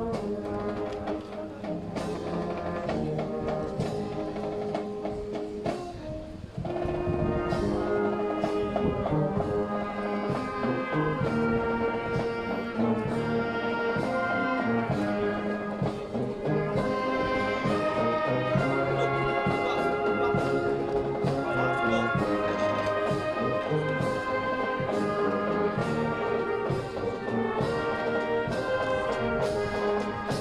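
Live brass band playing, with a steady drum beat under held brass chords; the music thins briefly about six seconds in, then comes back louder.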